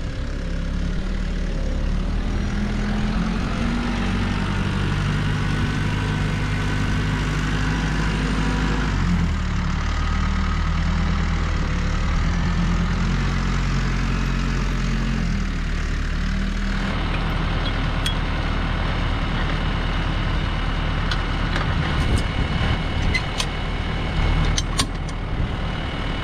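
New Holland T2420 compact tractor's diesel engine running steadily as the tractor is manoeuvred to hitch up a mower. The engine note changes speed about nine seconds in and again about seventeen seconds in. Near the end come a few sharp metallic clicks.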